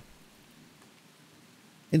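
Faint, steady rain falling, with no other sound through the pause.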